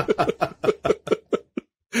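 Male laughter: a quick run of short 'ha' pulses that dies away about a second and a half in, followed by a short pause.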